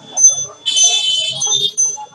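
High-pitched electronic beeping tones that start and stop in several bursts, the longest lasting about a second, with faint voices underneath.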